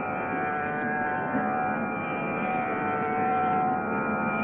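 Tambura drone: a steady chord of sustained tones that holds unchanged, with no singing or accompaniment over it.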